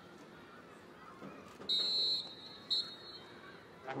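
A high whistle blown twice, a long blast of about half a second and then a short one, over faint crowd noise; a marching band's brass comes in right at the end.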